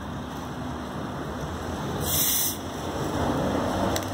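Cap being unscrewed from a large plastic bottle of carbonated Manaos grape soda, with a short hiss of escaping gas about two seconds in that lasts about half a second.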